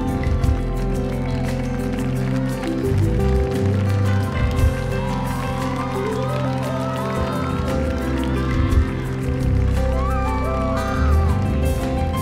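Live band playing a slow instrumental passage of a pop ballad: keyboards and guitars over bass and drums, with a melody line weaving above sustained chords.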